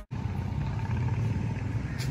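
Steady outdoor street background noise with a low rumble, after a brief silent gap.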